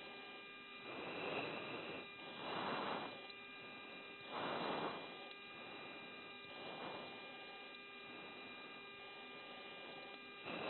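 Low-level audio from a military aircraft's recording system: a steady electrical hum carrying several fixed tones, with soft hiss that swells and fades every second or two, heard through a narrow radio-like band.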